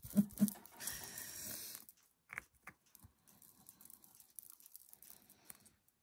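A short laugh trailing off, then about a second of scratchy rubbing as a small ink pad is worked over the edge of a paper print, followed by a few faint taps and handling sounds.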